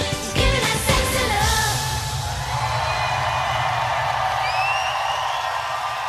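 Live pop song with a female lead vocal and a heavy beat, ending about a second and a half in, followed by a large arena crowd cheering with high rising whoops while a low tone holds underneath.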